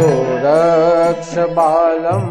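Male voice singing a devotional mantra-chant in long, wavering held notes with ornamented pitch bends, over instrumental accompaniment.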